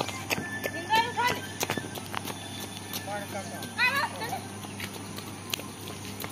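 Voices of people on a railway platform: two short high-pitched calls, one about a second in and one about four seconds in, over a low steady hum and scattered clicks.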